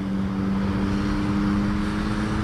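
Steady roadside traffic noise with a low, even engine hum, swelling slightly about a second in.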